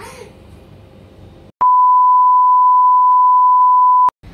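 Faint room hiss, then about a second and a half in a loud, steady 1 kHz test tone starts abruptly: the reference tone that goes with colour bars.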